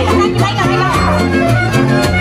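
Live mariachi band playing: violin and trumpet carry the melody over strummed guitars keeping a steady beat and deep bass notes stepping beneath.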